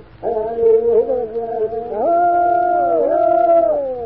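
Men's voices singing a Seminole song in long held notes, from a 1940 analog disc recording. About halfway through they step up to a higher note, then slide down in pitch together and break off near the end.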